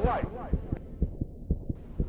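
A low, regular thumping pulse, several beats a second, like a heartbeat sound effect in a film trailer's sound design.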